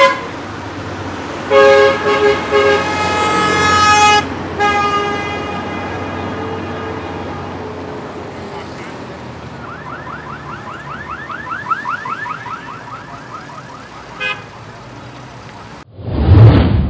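Car horns honking in several loud blasts over the steady sound of slow-moving traffic. Later a rapid warbling tone repeats about five times a second for a few seconds.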